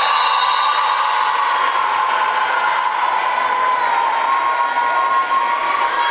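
A horn sounding one long, unbroken blast that sags slightly in pitch over several seconds, over crowd noise in a sports hall.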